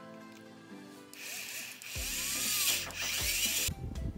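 Cordless drill-driver driving a screw through an acrylic sheet. It starts about a second in, whines for roughly two and a half seconds and stops suddenly, over background music.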